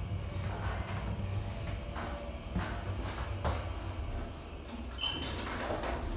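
Schindler HT elevator doors sliding open on arrival at a floor, over a steady low hum, with a brief high-pitched sound about five seconds in.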